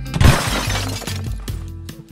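Glass-shattering sound effect: a sudden crash that fades over about a second and a half, over background music with a steady bass line.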